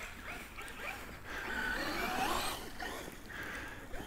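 Faint sound of a Traxxas MAXX V2 electric RC monster truck driving through snow, its motor whine rising and falling, a little louder around the middle.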